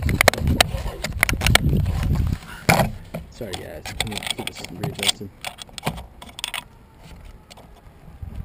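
Low rumbling handling noise on the microphone with scattered clicks and rattles, loudest in the first two and a half seconds, with a sharp knock just before the three-second mark, then quieter clicking and rustling.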